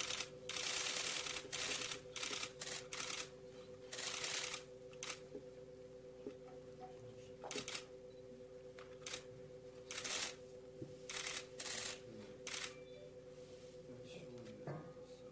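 Camera shutters firing in rapid bursts, heard as irregular runs of fast clicking that start and stop throughout, over a faint steady hum.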